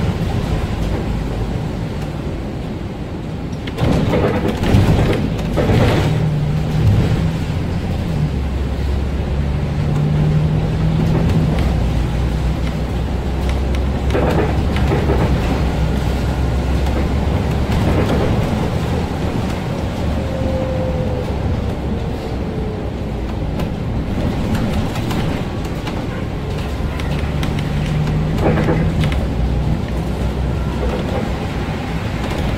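Volvo 7000A articulated city bus heard from inside at the front while driving: engine and drivetrain running with a low drone that rises and falls a few times, tyre noise on the wet road, and occasional knocks and rattles from the body, clustered early on and once near the middle.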